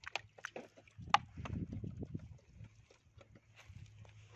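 Thin plastic bottle clicking and crackling in an irregular run of sharp ticks as it is handled and pushed down into a plastic bucket, with the sharpest click a little over a second in. A low rumble from handling runs through the middle.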